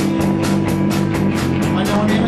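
Live rock band playing a song: electric guitars holding chords over a drum kit keeping a steady beat.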